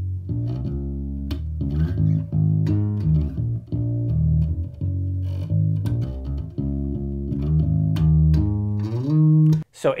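Ernie Ball Music Man Sterling electric bass played solo and unaccompanied: a riff of sustained notes, each changing every half second or so, which stops just before the end.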